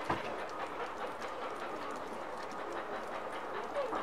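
Volkswagen Transporter van idling: a steady rumble with faint clicks and crunches throughout, and a short knock just after the start.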